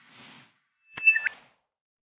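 Animated logo sound effects: a short whoosh, then about a second in a sharp click with a brief two-note electronic chirp over a second whoosh.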